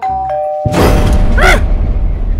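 Dramatic sound effect: a held two-note chime, then about two-thirds of a second in a loud thunderclap that keeps rumbling.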